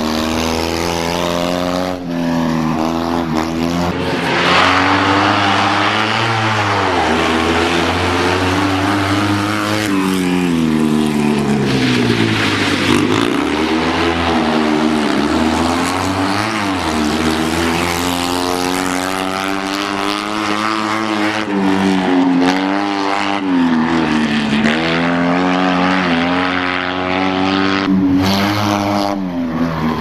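Fiat 126p rally car's air-cooled two-cylinder engine driven hard, its revs climbing and falling over and over as it accelerates, shifts and lifts for corners, with a few abrupt breaks.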